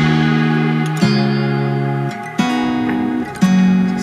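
Background music: guitar chords, a new chord struck about once a second.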